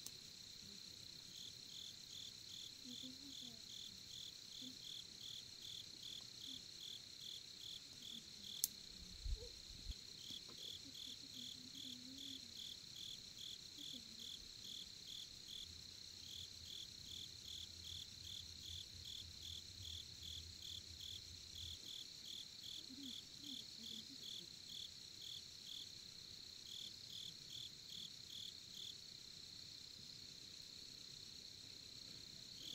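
Crickets chirping steadily at night: a continuous high trill with a pulsed chirp about twice a second over it. A couple of brief knocks sound about nine seconds in.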